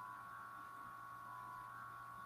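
Faint steady electrical hum with a thin high whine of several steady tones, the room tone of the recording with no other sound.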